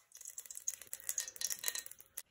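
Dry puffed rice rattling against the sides of a metal pot as it is stirred with a spoon: a quick, continuous patter of small clicks that stops near the end.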